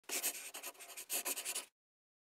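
Scratchy sound of writing, like a pen scratching on paper, in two quick bursts that stop abruptly just before the end.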